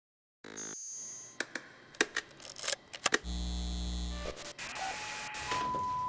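Camera equipment starting up: a short electronic sound, then a run of sharp clicks from buttons and switches and a brief low hum. A steady high beep tone begins near the end.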